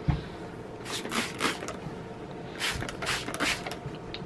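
Trigger spray bottle spritzing tap water onto a cotton muslin scarf: several short hissing sprays in two groups, a few about a second in and a few more near three seconds in.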